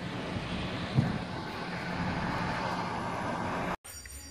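Car engine running steadily with a low hum, heard from inside the car with the window down. It cuts off abruptly just before the end.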